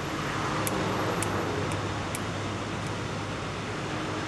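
Steady outdoor traffic rumble, with three faint clicks in the first half as a key pries at a glass bottle's cap that will not come off.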